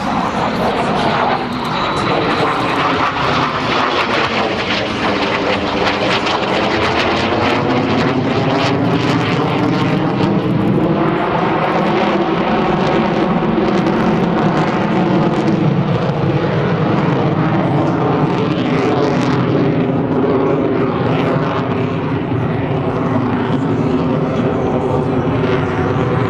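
F-22 Raptor fighter jet's twin F119 turbofan engines, heard loud and continuous as the jet flies overhead. A sweeping, wavering tone shifts through the noise as it passes.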